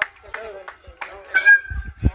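Short, high-pitched shouts from children's voices, several in quick succession, with the loudest call about a second and a half in.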